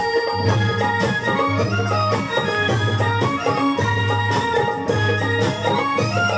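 Live instrumental Garhwali folk dance music: dhol drum strokes and a steady low beat under a sustained reedy melody line.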